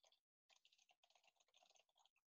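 Faint computer keyboard typing: a quick run of keystrokes that breaks off about a quarter second in and starts again about half a second in.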